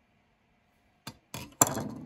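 Off-screen handling noise: a sharp click about a second in, then two short clinking, clattering bursts near the end, the last the loudest.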